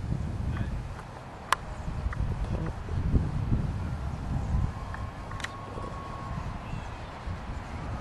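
Outdoor microphone rumble from wind buffeting a handheld camcorder's microphone, rising and falling, with a few sharp clicks scattered through it.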